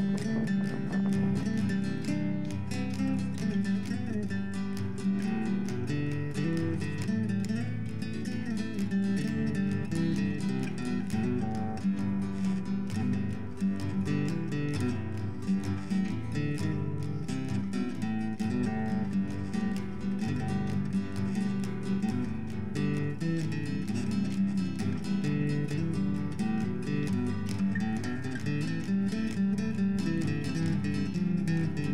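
Acoustic guitar music, picked and strummed, playing steadily.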